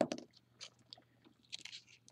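Faint crinkling and rustling of paper being handled and folded, a few small crackles with a short cluster near the end.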